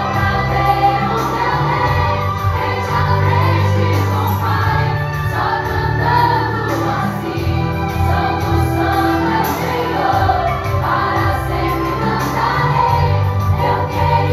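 A group of young women singing a Christian worship song together, one voice leading through a microphone, over music with a steady low bass line.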